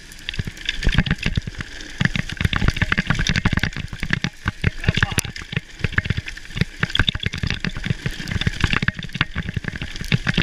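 Santa Cruz V10 downhill mountain bike rattling and clattering at speed over a rough dirt trail: tyres on loose dirt and constant irregular knocks from the bike, with wind on the helmet microphone. It gets much louder about a second in.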